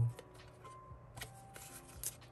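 Stiff photocards being handled and slid against each other in the hand, with a few light clicks and rustles, over faint background music.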